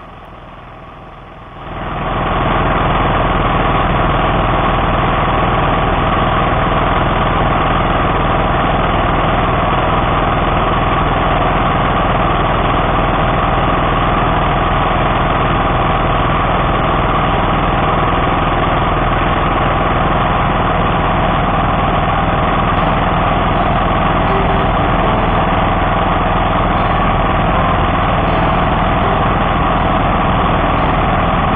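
DR field and brush mower engine running steadily and loud, close by. It comes in sharply about two seconds in and then holds an even note.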